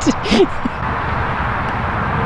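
Steady background rumble of traffic from a nearby highway, with a short laugh at the start.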